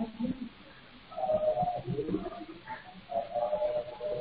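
Indistinct background sounds coming through an unmuted participant's open microphone on an online call, heard as thin, narrow-band call audio: two short pitched sounds, each about half a second long, about a second and about three seconds in.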